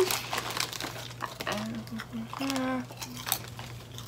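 A plastic crisp bag crinkling and rustling as a hand rummages in it and handles it, in short scattered crackles.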